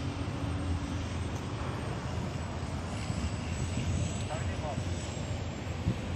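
Honda CG 160 Start's air-cooled single-cylinder four-stroke engine idling steadily.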